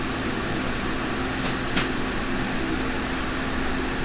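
A steady mechanical hum with a hiss, like a running fan or air-conditioning unit, with one faint click a little under two seconds in.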